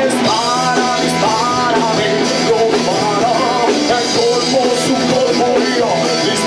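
A rock band playing live: drums, electric guitar and keyboard, with a wavering melodic lead line on top.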